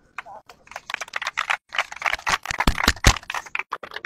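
A small group clapping their hands in a quick, dense burst that starts about a second in, pauses briefly, picks up again and stops just before the end, mixed with voices.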